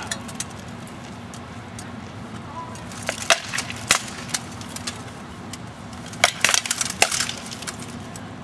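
Rattan swords striking in a sparring bout, sharp wooden clacks: a couple of single hits about three to four seconds in, then a quick flurry of several hits around six to seven seconds.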